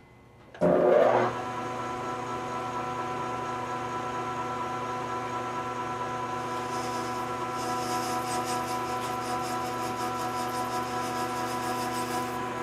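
Metal lathe starting up about half a second in and running with a steady, multi-toned motor and gear whine. From about six and a half seconds a finer, high-pitched rattle joins it as the tool takes a single quarter-inch-deep cut in brass bar stock, throwing chips.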